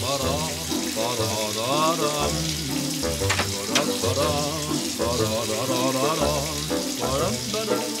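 A shower running steadily while someone sings a wordless la-la tune under the water. Two sharp clicks come about midway.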